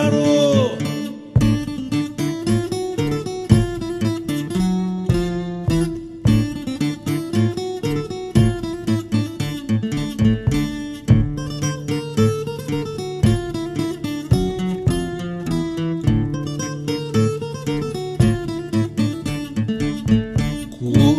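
Instrumental break of a Greek popular song: plucked strings play a quick picked melody over strummed chords and held low notes, with no singing.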